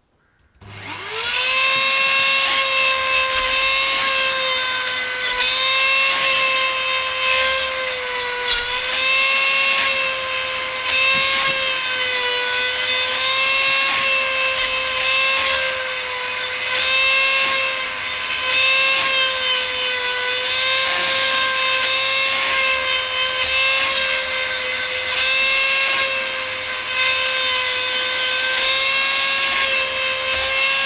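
A Dremel rotary tool on a flexible shaft spins up with a rising whine about half a second in, then runs at a steady high-pitched whine. It is driving a diamond grinding stone into the cutters of a chainsaw chain, and the pitch sags briefly now and then as the stone bears on a tooth.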